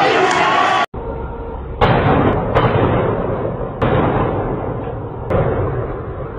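A crowd's noise of voices, cut off abruptly about a second in, then four loud bangs spread over the next few seconds, each trailing off in a long echo.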